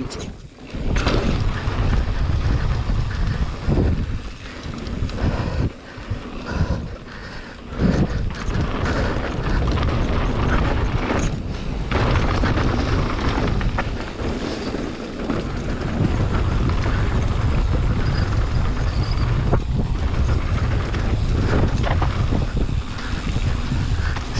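Mountain bike descending a dirt flow trail at speed: wind rushing over the camera microphone with a deep rumble, mixed with the tyres rolling on dirt and the bike rattling. The noise drops away briefly a few times.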